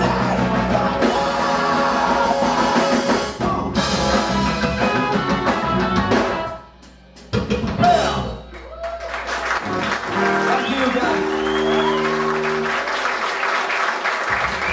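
Punk band playing loud live, drum kit and distorted electric guitar. The song stops abruptly about six and a half seconds in, then one more loud hit, then a few held guitar notes over crowd noise.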